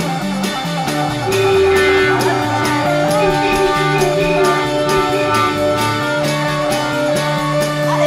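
Instrumental break of a late-1960s rock band recording: electric guitar playing long held notes, some bent in pitch, over a moving bass line and a steady drum beat.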